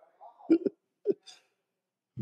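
A man laughing in short bursts, two quick chuckles about half a second and a second in.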